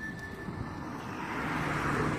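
A vehicle's rushing noise that swells to a peak near the end, with a low hum under it.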